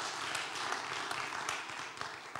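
Small audience applauding, the clapping thinning out and fading toward the end.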